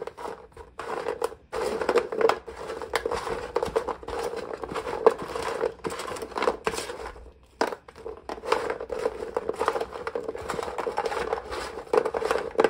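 Hard, dry bagel cubes being stirred and tossed by hand on an oiled stainless-steel baking pan, an irregular crunchy rustling and scraping with small clicks, with a short pause about seven seconds in. This is the cubes being coated in olive oil before seasoning and baking into croutons.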